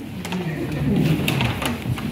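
Indistinct talking of several people at once, with a few light clicks mixed in.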